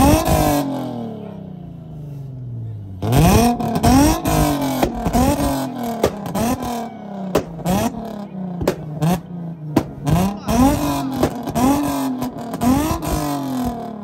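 Infiniti G35 coupe's exhaust: the engine is revved once and drops back. Then, about three seconds in, it is blipped over and over, about twice a second, each rev rising and falling with sharp pops.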